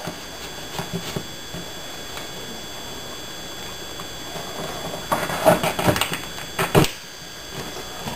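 Handling noise as a termite alert tube is slid down into a hole in the wall and its plastic cover plate is set against the wall: a few small clicks about a second in, then a cluster of knocks and scrapes from about five to seven seconds in.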